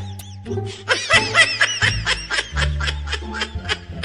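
Background music with a steady bass line. From about a second in to near the end, a high-pitched snickering laugh runs over it as a quick string of short giggles, about five a second.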